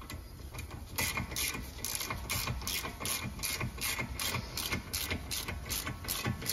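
Socket ratchet clicking in quick, regular strokes, about three or four clicks a second, as it turns a brake caliper bolt on a 2018 VW Polo; it starts about a second in.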